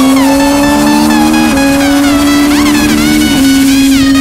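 Sport bike's inline-four engine running at high, steady revs under way, its pitch creeping up and dipping slightly twice. Faint music sounds over it.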